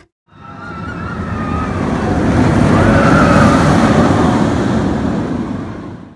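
Intro sound effect for a logo animation: a rushing noise with a few faint wavering tones that swells for about three seconds, then fades and cuts off.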